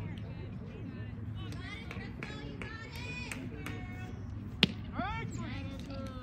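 A softball bat hitting a pitched ball once, a single sharp crack about four and a half seconds in, followed at once by shouts from players and spectators. Voices call and chatter throughout.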